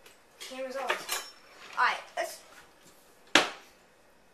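Metal utensil clinking and scraping against a glass baking dish in a few short, uneven strokes, the loudest a sharp clink late on.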